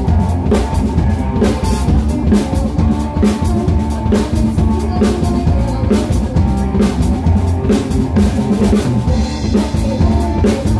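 Live band playing, with the drum kit loud and close and keeping a steady beat of kick, snare and cymbals over bass and guitar.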